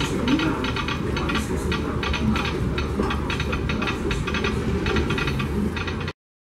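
Disneyland Railroad steam train, Fred Gurley No. 3 with its open excursion coaches, rolling along the track. It makes a steady rumble with a quick, uneven run of clicks and clacks from the wheels and cars.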